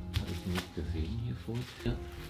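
Soft rustling and a few light knocks as a large board holding a mounted print under glass is lifted and handled. He is knocking to shake a dust particle out from between the glass and the print.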